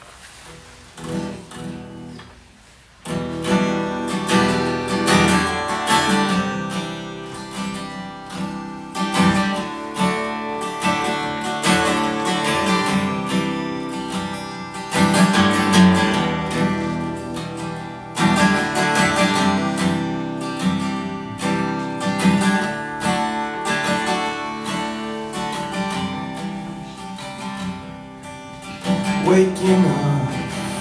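Steel-string acoustic guitar played solo: a few quiet picked notes, then full strumming from about three seconds in. It is the instrumental introduction to a song, with the vocals starting just after.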